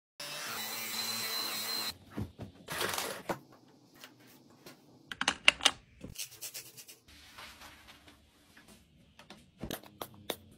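A cordless Dyson stick vacuum with a mini brush tool running on fabric upholstery for about two seconds: a steady whir with a high whine. It stops abruptly and gives way to a run of sharp clicks, taps and rustles of small items being handled in a plastic drawer organizer. The loudest clicks come about five and a half seconds in.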